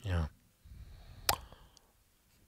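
A brief murmur from a man's voice, then about a second later a single sharp click over faint room noise.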